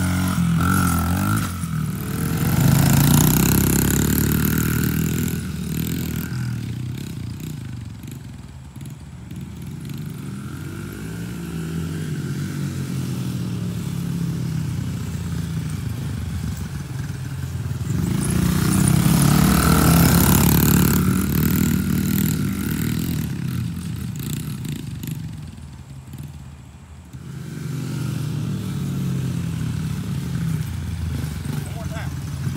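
Small dirt bike engines running and revving up and down as the bikes ride laps close by. The sound swells loud twice, about three seconds in and again around twenty seconds, and fades between as the bikes move away.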